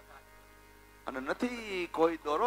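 Steady electrical mains hum from the sound system, heard in a pause in the talk; about halfway through, a man starts speaking again into the microphone.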